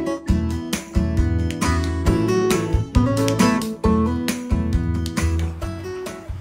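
Background music led by a strummed acoustic guitar, with held notes and short repeated strums.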